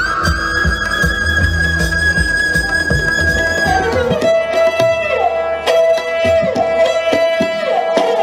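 Indian classical music: for about four seconds a long held high note over drum strokes, then it gives way to a sarangi playing sliding bowed notes with tabla accompaniment.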